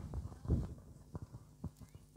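A string of soft, short knocks, roughly two a second, with a faint low rumble under them.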